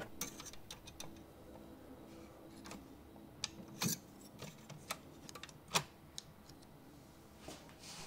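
Small, irregular clicks of a screwdriver working the pinch roller release lever on a Digital Compact Cassette recorder's tape mechanism, metal tip on plastic and metal parts. The loudest clicks come about four and six seconds in.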